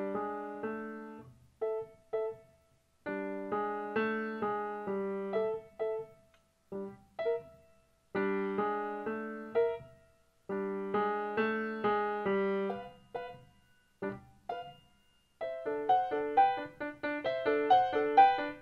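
Solo upright piano playing short phrases of repeated chords separated by brief pauses, then quicker, higher running notes in the last few seconds.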